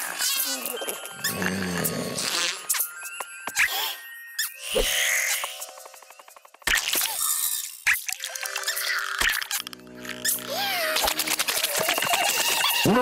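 Cartoon soundtrack: music mixed with comic sound effects, short squeaky pitched noises and sharp hits, dropping almost to silence for about a second around the middle before starting up again.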